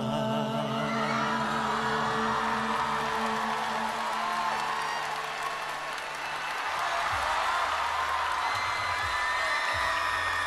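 The song's closing notes are held and ring out until about six or seven seconds in. Audience cheering and applause build up underneath them.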